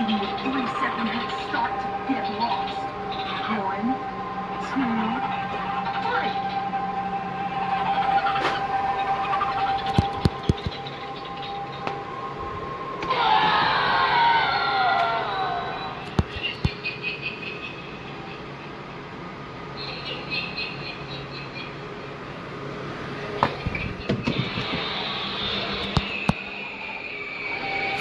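Halloween animatronic props playing their recorded soundtracks: voice-like sound effects and spooky music, with a louder stretch of falling, laugh-like voice about halfway through.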